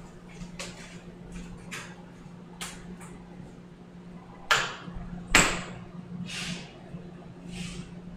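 Scattered light clicks, then two louder sharp knocks about a second apart midway, over a steady low hum; a few soft short hisses follow near the end.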